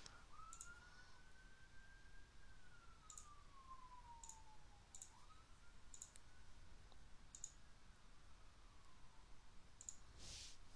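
Faint computer mouse clicks, about seven sharp clicks at uneven intervals, with a faint tone slowly rising and falling underneath.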